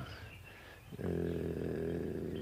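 A man's long, drawn-out hesitation sound, "uhh", held on one steady low pitch. It starts about a second in, after a brief lull.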